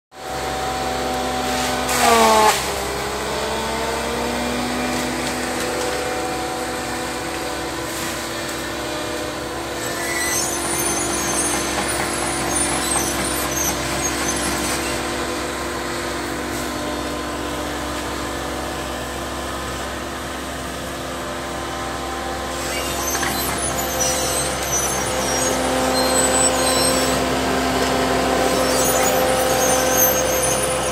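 Tracked forestry carrier's diesel engine and hydraulics running steadily while the machine crawls through brush. About two seconds in there is a brief loud whine that drops sharply in pitch and then climbs back. Scattered crackles come through later, and the sound grows a little louder near the end.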